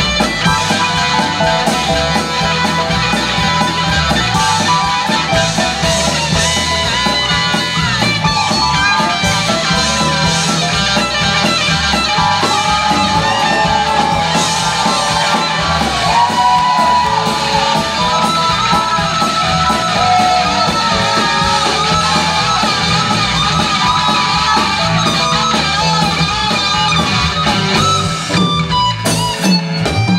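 Live rock band playing, an electric guitar leading over bass, drums and keyboard.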